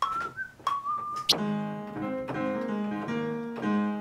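A person whistles a short phrase, then about a second in a keyboard instrument starts playing a run of chords that change every half second or so: a MIDI keyboard played through music software.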